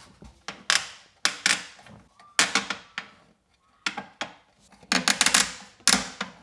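A string of irregular knocks and clicks, with a quick rattling run of clicks about five seconds in, as the plastic adjustable legs of kitchen base units are turned and the units are nudged into line.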